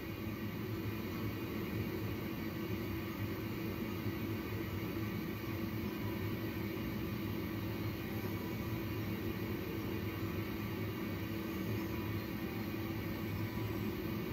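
Steady hum and air hiss of NICU equipment around an infant incubator, such as the incubator's fan and the CPAP air supply, with a constant low tone running under it and no change.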